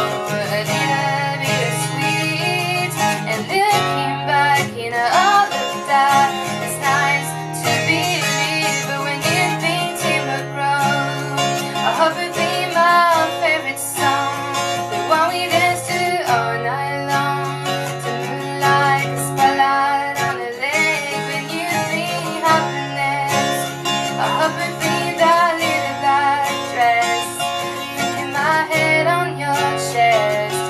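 A woman singing over her own strummed acoustic guitar.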